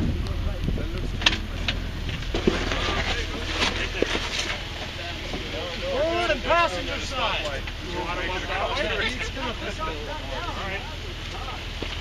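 Jeep Wrangler engine running with a steady low hum while the Jeep crawls over a rock ledge, with two sharp knocks in the first few seconds.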